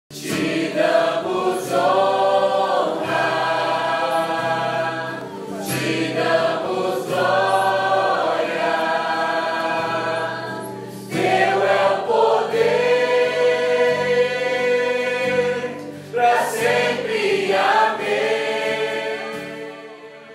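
Choir singing a Christian song in long held notes, with short breaks about five, eleven and sixteen seconds in, fading near the end.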